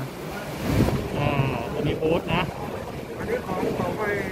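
A low rumbling noise on the microphone, strongest about a second in, under quiet talk.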